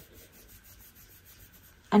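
Faint scratchy rubbing of a fingertip swiped back and forth over the pressed powder of a Dior highlighter, a few light strokes.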